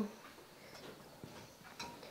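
A quiet pause, close to silence, with a couple of faint short clicks, one a little past the middle and one near the end.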